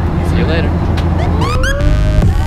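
Steady low drone of an airliner's cabin noise in flight. In the second half a rising, gliding tone comes in over it.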